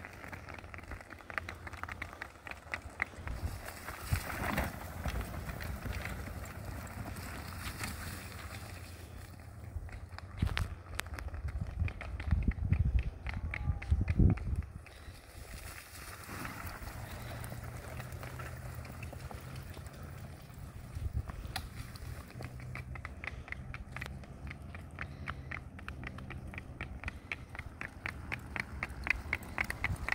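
Miniature horse's hooves clip-clopping at a quick, even trot on asphalt while it pulls a two-wheeled cart, with the cart's wheels rolling along. In the middle there is a stretch of louder low rumbling, and the hoofbeats fade while the horse is on the grass verge.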